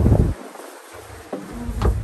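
Steady low drone of a passenger boat's engine that drops away for about a second near the start, then comes back, with a few short knocks in the second half.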